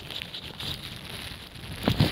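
Gusty wind buffeting a microphone muffled under a rain jacket, with faint crackling rustle.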